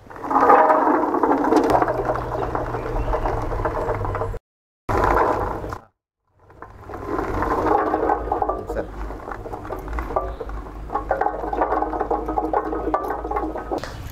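Coffee cherries poured from a plastic bucket, rattling and tumbling into the sheet-metal hopper of a coffee pulping machine, over a low steady hum. The sound breaks off twice, briefly, near the middle.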